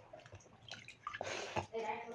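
A hand mixing pakhala, cooked rice soaked in water, in a steel pot: a wet noise of fingers working the rice, faint at first and louder in the second half.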